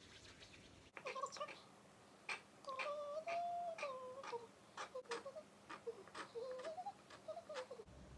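Kitchen knife cutting a rope of boba dough into pieces on a plastic cutting board, a short tap about every third of a second, while a person hums a wandering tune.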